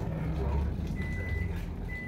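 A low rumble, with a thin steady high beep tone that comes in about halfway through and holds.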